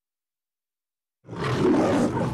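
After just over a second of silence, the Metro-Goldwyn-Mayer logo lion roar starts suddenly: a loud, rough lion roar.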